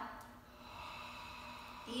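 A person breathing out in one long, steady exhale lasting about a second and a half while holding a glute bridge, emptying the lungs on the cue to get all the air out.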